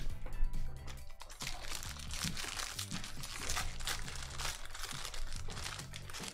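A foil trading-card pack crinkling and tearing as it is handled and pulled open by hand, over steady background music. The crinkling starts about a second and a half in and goes on in quick, dense crackles.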